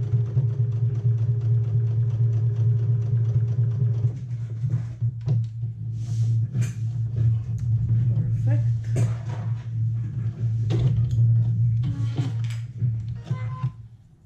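Computerized sewing machine running steadily as it re-stitches a curved neckband seam, a continuous low hum that stops just before the end.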